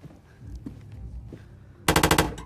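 Faint footsteps going up stairs, then near the end a metal door knocker starts rapping loudly on a wooden door, each strike with a metallic ring.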